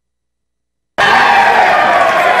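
Spectators shouting and cheering at a judo match, cutting in suddenly about a second in after dead silence.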